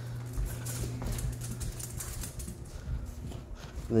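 Light, irregular patter and clicking of a pet skunk's claws on a hard laminate floor, mixed with a person's flip-flop footsteps, over a faint steady low hum.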